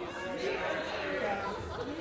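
Indistinct chatter of several voices talking over one another, low in level, with no one voice standing out.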